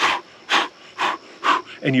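A man breathing out sharply four times, about half a second apart, in short forceful puffs timed with practice punches.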